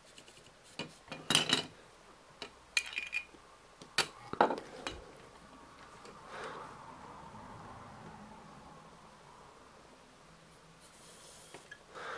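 Small clicks and clinks of a clip-on power lead being handled and attached, then the faint whine of a small planetary gear motor running for about four seconds, its pitch dropping and then holding steady. The motor is on a low 2-volt supply and drives a model bale wrapper's lifter arm.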